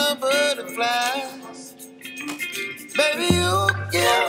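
Background music: a song with a sung vocal line, and a deep bass that comes in a little after three seconds in.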